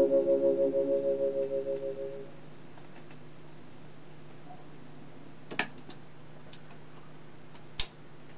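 A vintage portable record player: the record's last notes pulse and fade out through its speaker over the first two seconds. Then there is a steady low hum with a few sharp clicks as the stylus runs in the run-out groove. A louder click near the end comes as the autochanger trips and swings the tone arm back to its rest.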